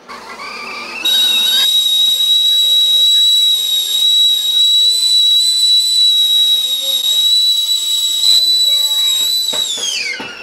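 Metal stovetop kettle whistling at the boil: the whistle climbs in pitch over the first second, holds one steady, loud high note, then falls in pitch and fades near the end.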